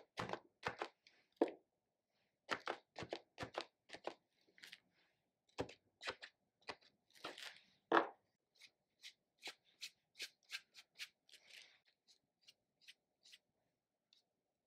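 Quick, repeated taps of a round-tipped paint marker dabbing onto a sketchbook page, several a second, thinning out about halfway through into lighter, scattered taps and short scratchy strokes of a paintbrush on the paper.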